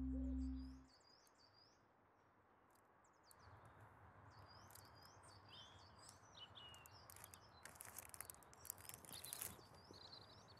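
A low held music note fades out in the first second. It leaves faint outdoor ambience with small birds chirping in short repeated calls, and a few faint clicks near the end.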